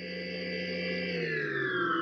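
Synthesized transition sound effect: a held electronic chord of several tones that slides steadily downward in pitch from about a second in.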